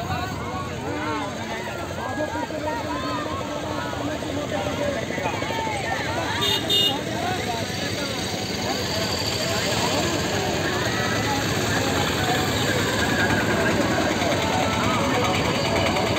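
Auto-rickshaw engines running as a convoy of the three-wheelers pulls past, growing louder toward the end, with voices throughout and a short horn toot about six and a half seconds in.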